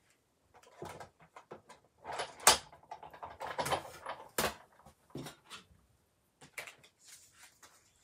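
Sizzix Big Shot manual die-cutting machine being hand-cranked, its cutting plates rolling through and sliding out, with scattered clicks and knocks of the plastic plates being handled; the two loudest knocks come about two and a half and four and a half seconds in.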